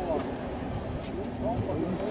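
Several people chatting in the background, their voices overlapping, over a low uneven rumble.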